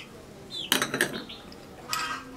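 A few quick clinks of a metal spoon against a small spice jar, around the middle.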